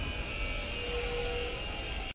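Wind buffeting the camera's microphone: a steady low rumble with a hiss over it.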